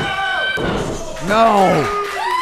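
A single sharp slap of a referee's hand on the wrestling ring mat as he counts a pin, under a held shout.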